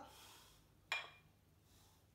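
A single short metallic clink about a second in, from the iron plates of a handheld adjustable dumbbell being moved.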